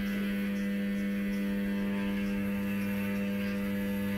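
Stepper motor of a DIY motion-control camera robot turning its rotation (tilt) axis counterclockwise at constant speed: a steady pitched hum. A lower hum joins about two and a half seconds in.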